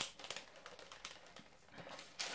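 Faint handling sounds of a cardboard gift box and its paper packing being opened: a sharp tap at the start, then light scattered ticks and rustles.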